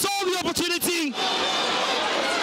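A man's commentary voice for about the first second, over steady stadium crowd noise that carries on alone after the voice stops.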